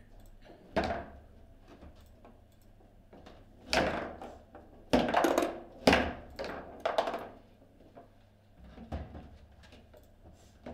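Table football in play: a run of irregular sharp knocks as the ball is struck by the rod figures and rods bang against the table, each with a short ringing tail. The hits are loudest and closest together from about four to seven seconds in.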